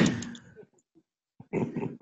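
A short burst of laughter that fades within about half a second, then a brief pause, then a man's voice starting again near the end.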